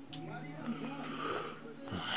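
A man's voice making one low, drawn-out breathy sound, close to the microphone, held for nearly two seconds.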